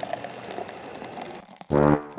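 A soft hiss with faint crackle, then, near the end, a loud low brass note suddenly opens the closing theme music.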